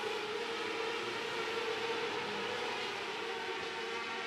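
A pack of 600 micro-sprint cars at racing speed, their 600cc motorcycle engines blending into one steady, high-pitched drone.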